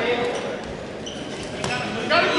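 Voices of wrestling-meet spectators and coaches calling out in a gym, with one sharp knock about one and a half seconds in.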